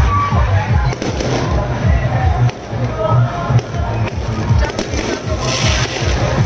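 Firecrackers going off in quick, irregular cracks, with music playing. Near the end there is a brief burst of hiss.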